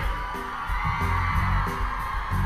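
Live rock band playing quiet backing music: a held high tone over low notes repeating about twice a second.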